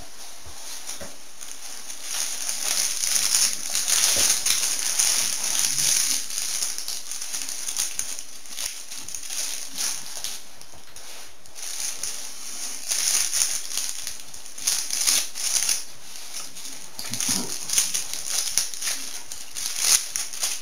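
Close-up chewing and mouth noises of someone eating a polvorón, a dry, crumbly shortbread: a run of small irregular clicks and rustles that swells a few seconds in and then comes and goes.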